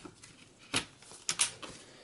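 Laptop battery pack of a Dell Studio XPS 1640 being pushed into its bay and latched: a single plastic knock, then a quick cluster of clicks as it seats.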